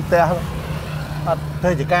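Men talking in short phrases over a steady low mechanical hum.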